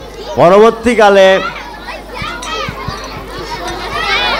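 A man's voice through a microphone speaks a short phrase in the first second and a half. After it, quieter children's voices chatter in the background.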